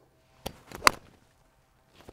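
A golf iron striking a ball off the turf: one sharp click of impact just under a second in, with a fainter tick shortly before it.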